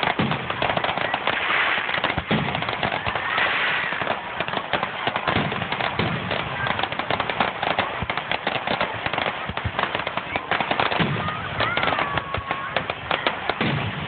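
Fireworks display: aerial shells bursting in a rapid, continuous string of bangs and crackling, with no let-up.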